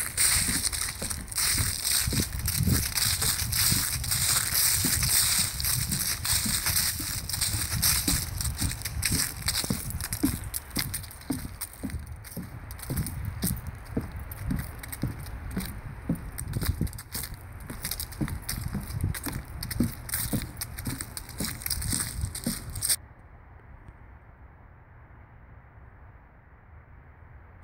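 Footsteps on a wooden boardwalk strewn with dry fallen leaves, about two steps a second with leaf rustle, at a brisk walk. The walking stops near the end.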